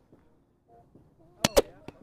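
Roundnet (Spikeball) ball being hit and bouncing off the net: two sharp smacks in quick succession about a second and a half in, then a lighter tap.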